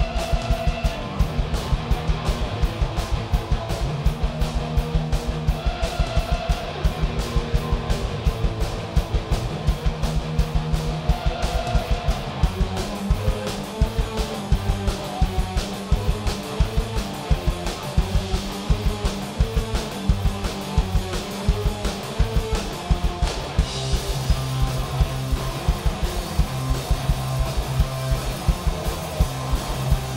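Live alternative rock band playing an instrumental passage on two electric guitars, electric bass and drum kit. A repeating distorted guitar riff runs over a steady, driving drum beat, and the texture changes near the end.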